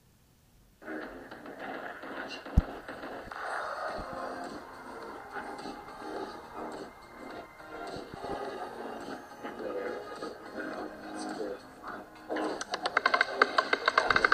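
Background music from a live online roulette stream, starting about a second in. Near the end comes a rapid run of clicks, the roulette ball rattling across the wheel's pockets as it settles.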